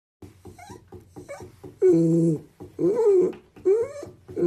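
Dachshund vocalizing: a run of short squeaky whines, then three long whining calls, the first held level, the second rising and falling, the third rising.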